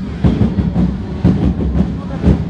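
Parade drums beating a steady marching rhythm, about two low thumps a second.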